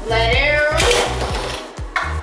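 Beyblade ripcord launcher being pulled, a quick rattling rip as the spinning top is released, then a sharp knock as the top lands in the plastic stadium, over background music.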